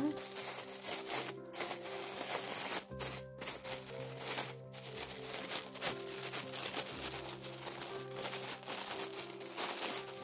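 Thin plastic drop-in bottle liner crinkling as it is handled, over background music.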